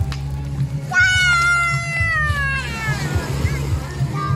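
Background music with a steady low line, over which a long high-pitched cry starts about a second in and slides slowly down in pitch for about two seconds, followed by a couple of short chirps.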